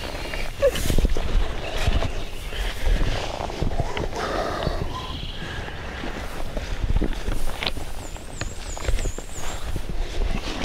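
Rustling, footsteps on forest-floor leaf litter and scattered light knocks as a tarp's corners are staked out by hand. A bird gives a thin, high, wavering call near the end.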